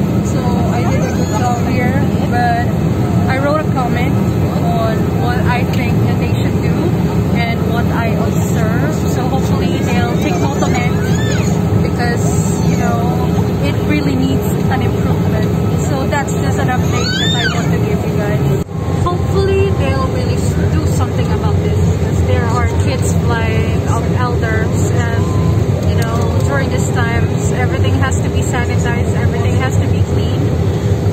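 Steady low drone of an Airbus A320 airliner cabin with its engines and air system running, and indistinct voices talking over it.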